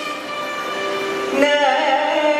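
Carnatic vocal alaap in Bhairavi raga with violin accompaniment: sustained held notes, then the male voice comes in about a second and a half in, sliding and oscillating between pitches in ornamented phrases.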